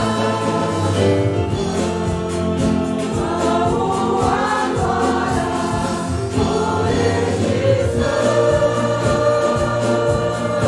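A group of voices singing a Portuguese worship hymn together, with instrumental accompaniment and a steady beat.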